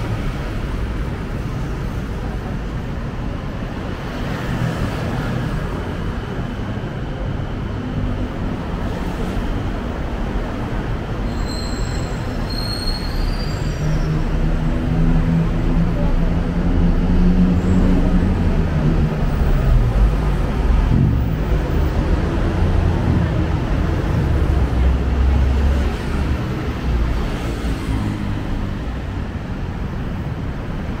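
Steady traffic noise on a busy multi-lane city road. It grows louder about halfway through, where a passing vehicle's pitched motor whine rises and then falls away.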